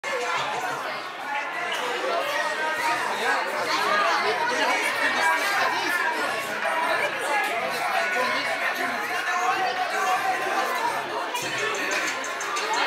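Crowd chatter: many voices talking over one another in a large room.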